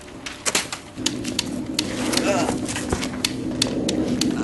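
Toy guns firing in a mock gunfight: about a dozen sharp, irregular clicks. A steady low hum starts about a second in.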